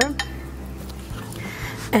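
A paintbrush lightly clinking against a porcelain watercolor palette, over a steady low hum that stops about a second in.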